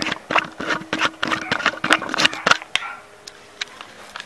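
Handling noise from a camera being taken off its tripod: a rapid, irregular run of clicks and knocks over a faint steady hum, dying away to quiet rattles a little before the end.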